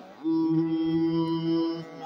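A man chanting a sung verse, holding one steady note for most of the two seconds with a brief breath at either end.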